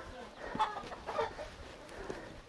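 Faint chicken clucks, two short calls about half a second and just over a second in.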